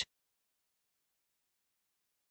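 Silence: no sound at all, just after a synthesized narrating voice cuts off.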